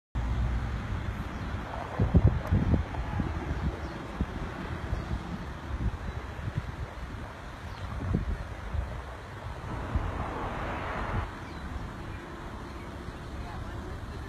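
Wind buffeting the microphone of a handheld camera, an uneven low rumble with stronger gusts about two seconds in and again around eight seconds.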